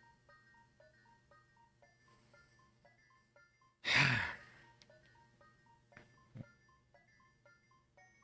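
Faint background music: a light chiming melody of short plucked notes, about three a second. About four seconds in, a single loud breathy rush of noise cuts across it for about half a second.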